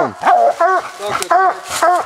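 Coonhound barking treed at the base of a tree: about four short chop barks in quick succession, the hound's tree bark telling the hunter it has game up the tree.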